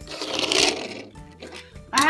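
Die-cast toy car rolled and slid across a plastic cutting mat, its small wheels whirring. The sound swells and fades over about the first second, then only faint scuffs follow.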